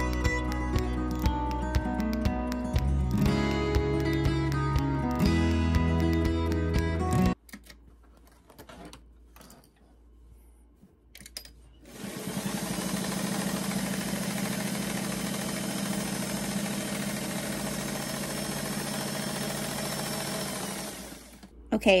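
Background music for about the first seven seconds, then after a short quiet gap a vintage Singer sewing machine runs steadily for about nine seconds, sewing a straight stitch through quilted fabric, and stops near the end.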